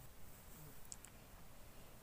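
Near silence with faint room tone, broken about a second in by two faint, quick, high clicks close together.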